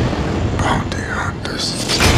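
Movie-trailer sound design: a steady low rumble with a few short hissing bursts over it.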